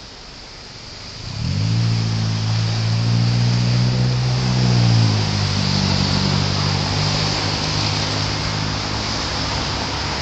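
A motor vehicle's engine starts up about a second in and runs with a steady low hum, dropping slightly in pitch about halfway, over a constant hiss of traffic and road noise.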